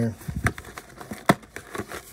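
A cardboard trading-card hobby box being handled and turned over in the hands: rustling and a few small clicks, with one sharp click a little past the middle.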